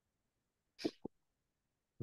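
A man's short sneeze a little under a second in, in two quick parts, with near silence around it.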